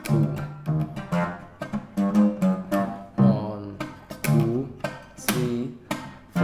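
Arabic oud played with a plectrum: a steady run of plucked notes, several a second, each with a sharp attack and a short ringing decay. The phrase is played in the 7/8 rhythm being taught.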